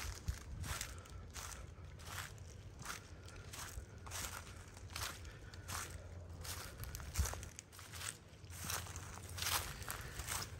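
Footsteps crunching through dry leaf litter and underbrush on the forest floor, an even walking pace of about one and a half steps a second.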